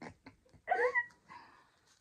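A single short, high-pitched meow-like call that dips, rises and then holds for about half a second, a little after the start, among faint clicks and rustles.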